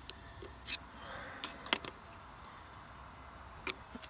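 Faint rubbing and a few small clicks as a silicone hose is pried off an engine's throttle body.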